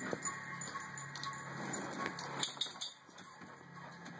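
Dog collar tags jingling in short, scattered clinks as dogs move about, with a cluster of clinks about two and a half seconds in. A faint steady low hum sits underneath.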